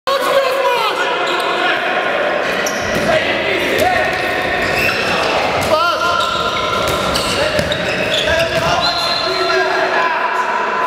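Indoor handball play: the ball bouncing on the court floor, with many short squeaks and scattered thuds from play, and players' voices calling out, all echoing in a large sports hall.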